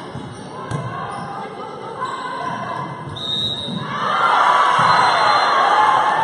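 Indoor volleyball rally in a gym: a few sharp thuds of the ball being played, then from about four seconds in players and spectators shouting and cheering together as the point ends.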